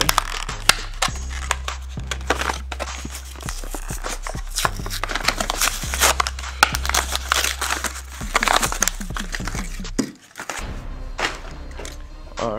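Plastic blister packaging of a die-cast toy car being cracked open and pulled apart by hand: a dense run of crackles, crinkles and tearing, with a short pause near the end. Background music plays underneath.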